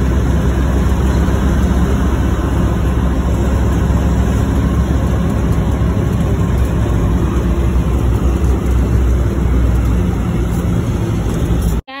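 Road and wind noise of a moving car picked up on a phone inside the cabin: a loud, steady rumble heavy in the low end. It cuts off abruptly near the end.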